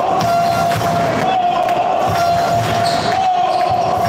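A handball bouncing on a sports-hall floor during play, mixed with crowd noise. Over it runs a steady held tone that wavers slightly in pitch.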